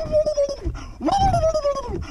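A man's long celebratory howls, two of them: the first held on one pitch, the second starting about a second in and sliding down in pitch.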